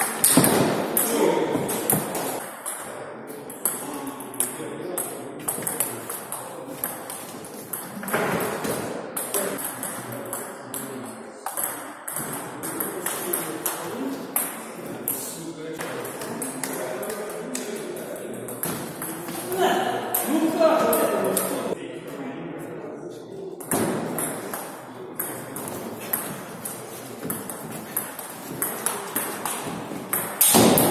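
Table tennis rallies: the plastic ball clicking sharply off the rackets and the table in quick runs of hits, with pauses between points.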